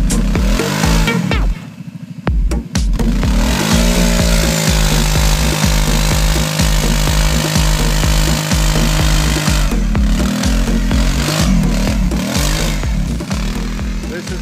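Kawasaki KFX 700 quad's V-twin engine revving up and down, then held at steady high revs for several seconds while the rear wheels spin and throw dirt, then revving up and down again as it rides off.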